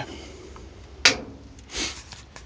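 Handling noise from a handheld camera as it is moved: a short scrape about a second in and a softer rustling swish near the end, over low shop background.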